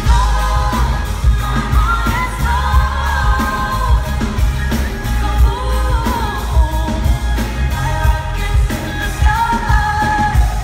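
Female pop singer singing live with a band of drums, bass guitar and keyboards, with heavy bass, heard from among the audience in a concert hall.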